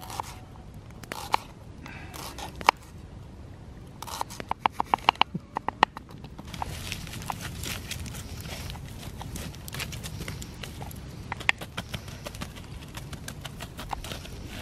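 Kitchen knife chopping garlic on a small wooden board: single sharp knocks, then a quick run of strokes about four to six seconds in. After that, a wood campfire burns with a steady rushing and scattered crackles and pops.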